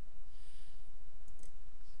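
A steady low electrical hum on a desk microphone, with a soft breath about half a second in and a couple of faint clicks near the middle.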